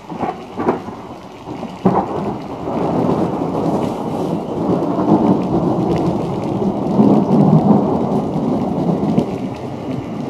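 Thunder: a few sharp cracks in the first two seconds, the last about two seconds in, then a long rumble that swells and is loudest about seven to eight seconds in.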